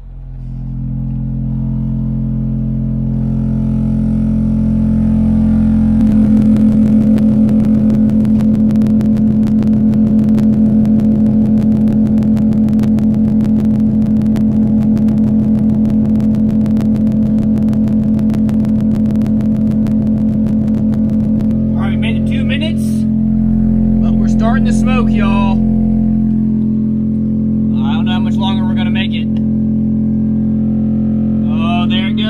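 A Black Diamond DIA-R12 12-inch car subwoofer playing a steady 40 Hz test tone in free air at about its 600-watt RMS rating, a loud low drone with overtones, run nonstop to find out how long the sub survives. From about six seconds in to about twenty-one seconds, a harsh rapid rattling buzz rides on the tone.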